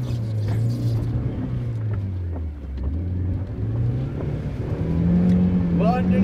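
Car engine heard from inside the cabin while driving on a dirt track. Its note falls over the first few seconds and then climbs again near the end, with a few light knocks in between.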